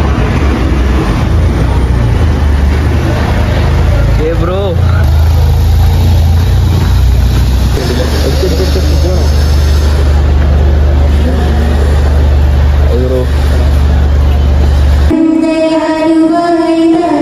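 Steady loud low rumble with rushing noise, as of a moving road vehicle heard from on board. A few faint voices or tones rise through it. About fifteen seconds in it cuts off abruptly to music with singing.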